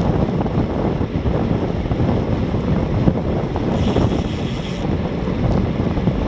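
Wind buffeting the microphone of a road cyclist's camera while riding at about 26 mph: a loud, steady, rumbling rush of air. A brief higher hiss joins it for about a second around four seconds in.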